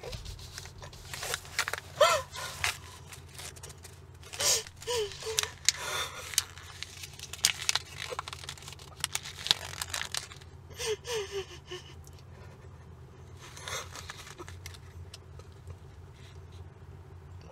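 A woman sobbing in short broken bursts of wavering cries and catching breaths, with fabric rustling as she clutches a jacket, over a low steady hum.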